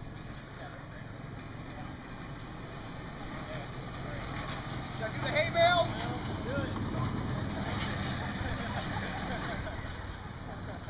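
A spectator's shout with a bending pitch about five and a half seconds in, with fainter voices after it, over a steady low rumble.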